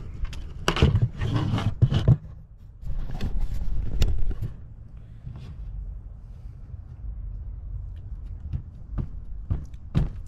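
Close handling noise, rustles and knocks, during the first four seconds or so as a damp paper towel is folded over on a plastic table, then quieter rustling and a few light taps over a steady low rumble.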